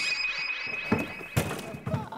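An edited-in sound effect: a quick rising sweep into a steady high electronic tone held for nearly two seconds. It is cut through by a few dull thunks, about a second in and again later, from the hinged doors of the booths swinging open as people step out.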